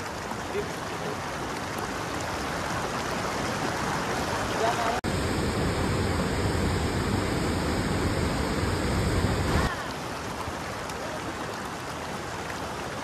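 Shallow mountain stream running over rocks: a steady rush of water. About five seconds in, the sound switches abruptly to a louder, deeper rush with more low rumble, which stops just as suddenly about five seconds later.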